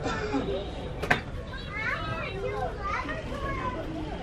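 Background chatter of children's voices, quieter than the narration, with a single sharp click about a second in.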